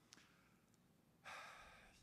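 Near silence, then a man's soft audible sigh, breathing out, in the last part.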